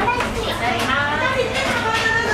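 Lively background chatter of other diners in a busy restaurant, including children's high-pitched voices.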